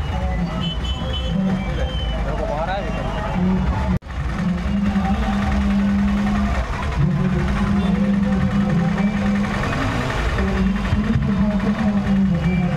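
Busy street traffic of auto-rickshaws and motorcycles running, with people's voices and loud music with long held low notes over it. The sound breaks off for an instant about four seconds in.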